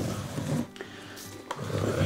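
Canvas being tilted and shifted on a plastic-sheeted table: two brief scraping, rubbing bursts with small knocks, about a second and a half apart, over quiet background music.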